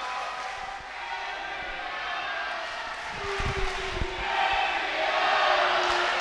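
Wrestling crowd chanting and cheering, growing louder over the last second or two, with a few low thumps around the middle.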